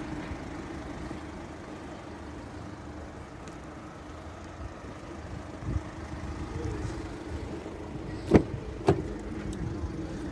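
A steady low hum, then near the end two sharp clicks about half a second apart as the front door of a Mercedes-Benz A-Class is unlatched and pulled open.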